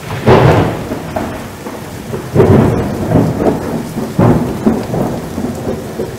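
Thunderstorm sound effect: steady rain with three loud rolls of thunder, the first right at the start and the others about two and four seconds in.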